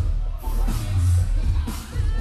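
Hip hop backing beat with heavy bass and regular drum hits, played loud through a bar's sound system.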